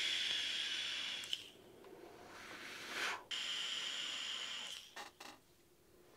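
A vape being drawn through a Wotofo Flow sub-ohm tank, heard as an airy hiss with a thin whistle over it. It drops away about a second and a half in and comes back for another second and a half, followed by a couple of soft clicks.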